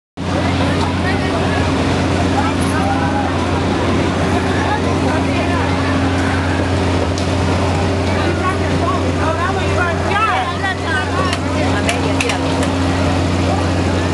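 Fairground ambience: a steady low machine hum under a crowd of chattering voices, with a cluster of high shrieks about ten seconds in.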